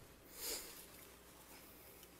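A single short sniff close to the podium microphone about half a second in, over quiet room tone.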